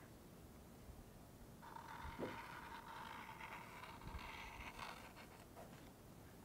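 Faint scratching of an Apple Barrel paint pen's tip drawing across a wooden frame, starting about a second and a half in and fading near the end.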